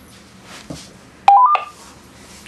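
Juentai JT-6188 dual-band mobile radio switching on: a click, then its power-on beep, a quick three-note tone stepping upward, a little over a second in.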